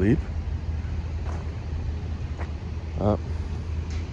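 Steady low rumble of street traffic, with a man's short "uh" about three seconds in.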